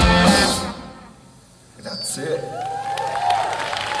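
Live rock band with electric guitars and drums hitting the final chord of a song, which stops about half a second in and rings away within a second. After a short lull, people's voices come up from the crowd and stage.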